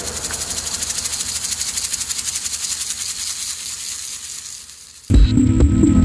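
Electronic jazz music: a fast, even, high-pitched pulsing texture fades out as one track ends. About five seconds in, the next track starts abruptly with a loud, deep synth bass.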